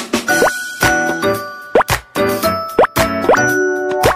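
A short, light jingle with steady bell-like notes, broken by four quick rising 'bloop' pop sound effects.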